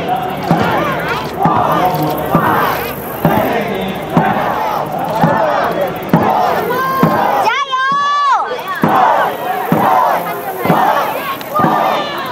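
Dragon boat drum struck about once a second, keeping the paddling stroke, under a crowd of voices shouting and cheering. About two-thirds of the way in, one high, drawn-out shout rises and falls over a brief lull.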